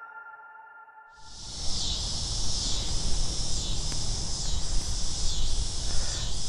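Last notes of a synthesizer intro jingle fading out, then, about a second in, outdoor ambience starts suddenly: a steady, high, pulsing insect chorus with a low rumble underneath.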